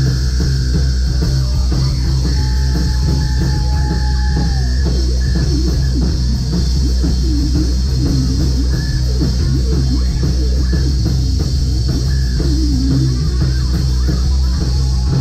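Rock band playing live, loud and continuous, with a heavy, steady low end of bass and drums under the guitars.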